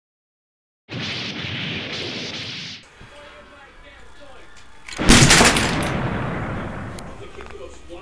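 Silence for about a second, then a hissing rush for about two seconds. About five seconds in comes a loud explosion-like bang that fades away over about two seconds: an explosion sound effect for the plane being shot down.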